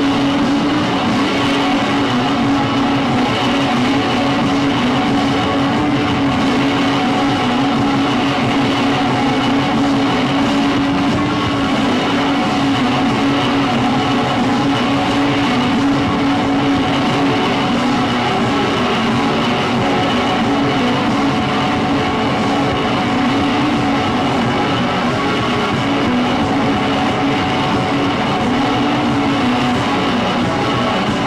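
Live experimental noise music from synthesizers, electronic effects and electric guitar: a loud, dense, unbroken drone with a strong steady low hum and no clear beat.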